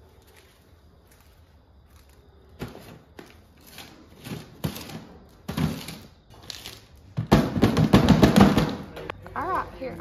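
Plastic jar of animal crackers knocking on a concrete floor as a goat noses and butts it, a few separate knocks, then a dense rattle of crackers for about two seconds near the end.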